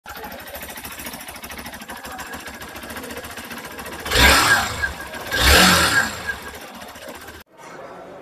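Hero XPulse 200 Pro's fuel-injected single-cylinder engine idling with a fast, steady beat, revved briefly twice, about four and five and a half seconds in.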